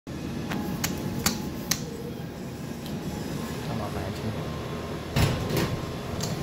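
Hydraulic service elevator's call button and doors: four sharp clicks in the first two seconds, then a heavier knock about five seconds in, over a steady low hum.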